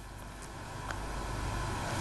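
Low, steady rumble that swells gradually louder, with one faint click about a second in.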